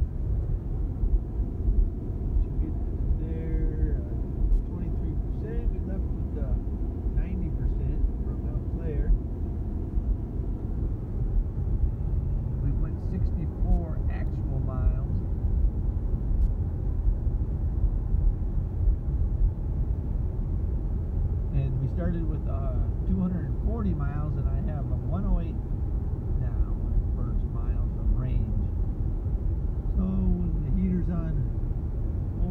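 Steady road and tyre noise heard inside the cabin of a Tesla Model S 85D cruising at about 60 mph, with no engine note. Voices talk in stretches over it.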